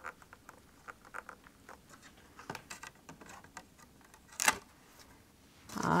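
Fingertips pressing and rubbing over the closed door of a stamp-positioning tool as a clear stamp is pressed onto cardstock: faint, scattered small taps and scratches. A single sharp click comes about four and a half seconds in as the hinged door is lifted.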